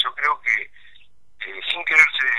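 Speech only: a man talking over a telephone line, his voice narrow and thin. There is a short pause about a second in.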